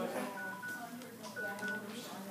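Two pairs of short electronic beeps at one high pitch, about a second apart, over indistinct background voices.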